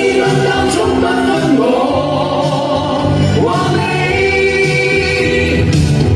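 A group of men and a woman singing together into microphones through a PA, over backing music with a bass line and a steady beat.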